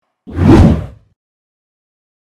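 A single whoosh transition sound effect. It swells in about a quarter second in, peaks loud around half a second, and is gone within a second.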